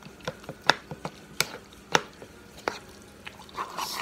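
A metal utensil knocking and scraping against a bowl while chopping up and mashing thick tuna salad with boiled egg. Sharp, irregular clicks come about every half second.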